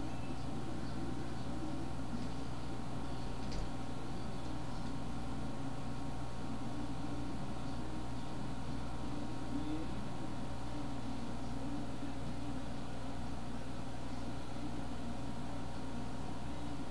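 Steady low hum with background hiss from a running computer picked up by the microphone, with one faint click about three and a half seconds in.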